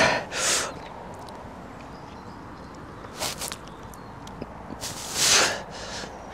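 A man breathing hard while lifting a heavy barbell in seated good mornings, with forceful exhales. There are two near the start, a short one about three seconds in, and a longer one a little after five seconds.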